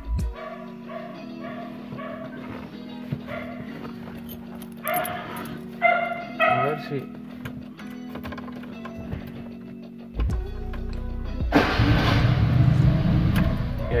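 A Fiat's engine started from the ignition switch after the alarm's ignition cut has been bypassed. A low rumble begins about ten seconds in and becomes a much louder, steady running noise a second and a half later.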